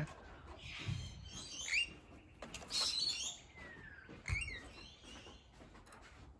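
Rainbow lorikeets chirping and screeching: a handful of short, separate calls, one rising and one falling in pitch, with the loudest screech about halfway through.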